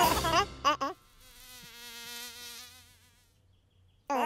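A cartoon buzzing sound effect: one steady, slightly wavering buzz lasting about two seconds, swelling and then fading out. It follows a brief moment of the characters' voices and music at the start.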